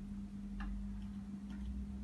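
A few faint clicks and taps, roughly a second apart, as a plastic bottle and a ruler are handled against a wall, over a steady low hum.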